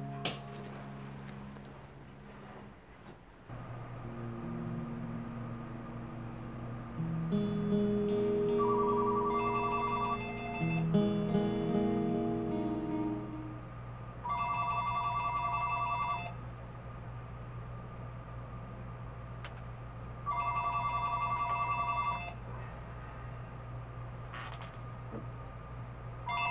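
Telephone ringing: long trilling rings of about two seconds each, repeating roughly every six seconds. The first ring comes over music of sustained notes, which fades out about halfway through.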